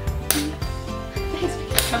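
Background music with a sharp plastic click near the end, as a stick is pushed into the Boom Boom Balloon toy's ratcheting frame.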